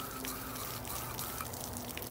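Garden hose spray nozzle spraying water over a spinning rod and reel, a steady hiss of spray and splashing as the soap is rinsed off.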